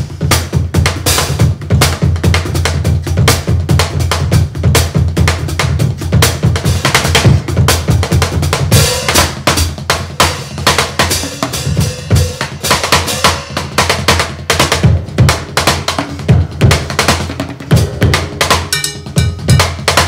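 Acoustic drum kit played continuously: a groove in an odd time signature, phrased as "one, two, three, and", with bass drum, snare and cymbals.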